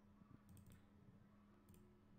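Faint computer mouse clicks: a quick run of about three around half a second in and another near the end, over a low steady hum.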